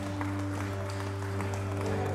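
Audience applause with scattered individual claps over a steady instrumental drone of several held low notes.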